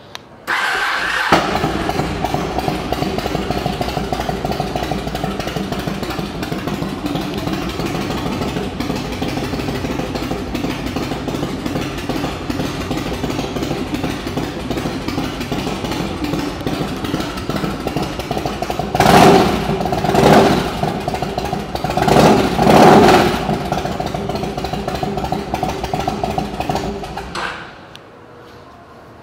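A 2001 Yamaha Road Star 1600's air-cooled V-twin on aftermarket pipes starts about a second in and settles into a steady idle. About two-thirds of the way through, the throttle is blipped twice in quick pairs, then the engine drops back to idle and is shut off just before the end.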